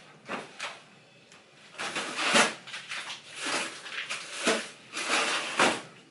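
A kitchen freezer drawer being opened and handled while bagged chicken is packed in: a run of sliding, bumping and plastic-rustling noises, the loudest about two and a half seconds in.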